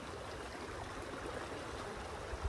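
Shallow river running over a rocky riffle: a steady rush of flowing water.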